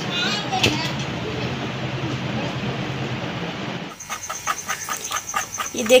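Faint, muffled voices over steady background noise, changing abruptly about four seconds in to a spoon stirring a thick mixture in a steel bowl, clinking against the metal about four times a second.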